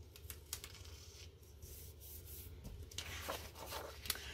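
Faint rustling and rubbing of paper as planner pages and a sticker strip are handled, with a few light ticks, growing louder in the last second.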